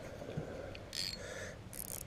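Spinning reel being worked by hand, with two short mechanical clicking, whirring bursts from the bail and rotor, one about a second in and one near the end.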